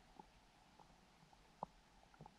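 Near silence: faint hiss with a few short, faint pops, the clearest about one and a half seconds in.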